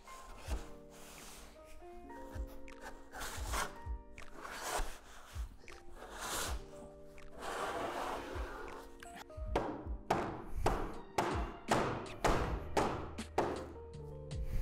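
A metal hinge tube scraping as it is pushed into the edge of a plastic shed door, then a quick run of knocks near the end from a rubber mallet tapping it home, over quiet background music.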